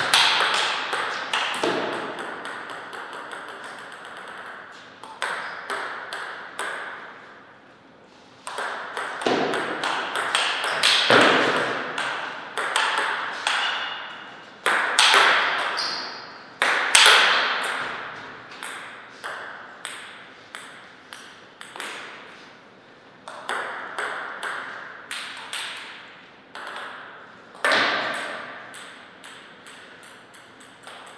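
Table tennis ball clicking sharply off the table and rackets in fast rallies, each hit ringing briefly in an echoing hall, with short pauses between points.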